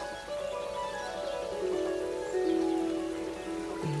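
Harp music: plucked notes ringing on and overlapping, with a run of notes stepping down in pitch through the middle.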